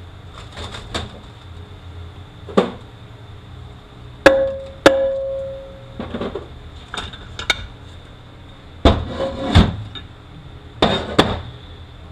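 Metal clanks and knocks as the cast bell housing and front pump of a Ford 5R55E automatic transmission are worked loose, lifted off the case and set down. About seven sharp knocks, and one pair of knocks about four seconds in leaves a ringing metal tone for about a second.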